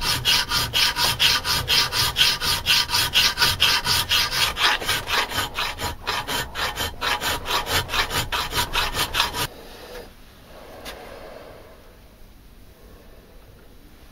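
Hand file worked back and forth across a steel piece clamped in a vise, in a fast, even rhythm of about three to four strokes a second. The filing stops about two-thirds of the way through.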